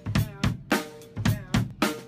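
Drum kit playing a steady beat, kick and snare hits roughly every half second with cymbal wash, the snare or tom ringing with a short pitched tone after some strokes.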